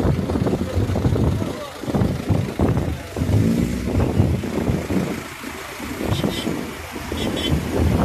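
Car engines running, uneven in loudness, with people's voices mixed in.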